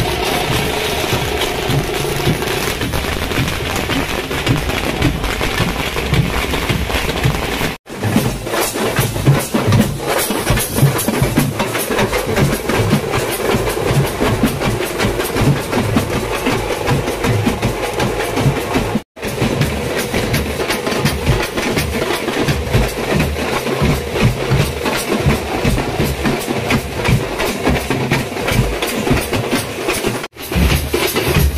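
A street drum troupe of large bass drums and snare drums beating a loud, fast, continuous rhythm. It is broken twice by brief dropouts at edits.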